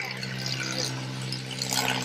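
A steady low hum under a rushing background noise, with a short burst of hiss near the end.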